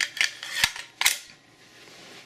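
A few sharp metallic clicks from handling a polished stainless steel Desert Eagle .50 AE pistol, steel parts knocking and clicking against each other, the loudest about a second in.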